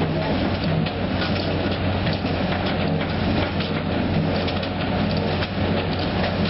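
Sugar beet processing machinery running steadily with a low drone, the beets knocking and clattering as they are conveyed and crushed.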